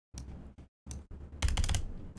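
Clicking and tapping on a computer keyboard and mouse, a few short taps with a quick cluster of clicks about one and a half seconds in.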